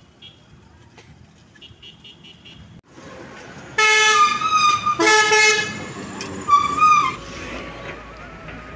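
Vehicle horns honking in street traffic: after a quieter stretch of traffic noise, several loud horn blasts come in just past the middle, with one more shortly before the end.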